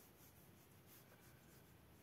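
Near silence, with faint soft scratching of a paintbrush stroking watercolour paper over a low room hum.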